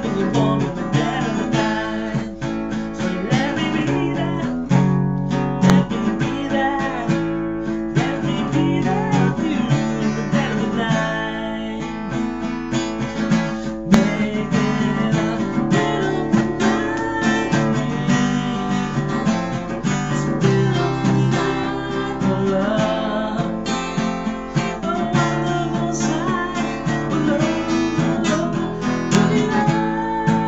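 Acoustic guitar strummed steadily, with a man's voice singing over it at times.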